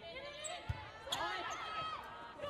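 Volleyball rally on an indoor hardwood court: a couple of sharp ball contacts about half a second apart near the middle, amid players' shoes squeaking and voices calling on court.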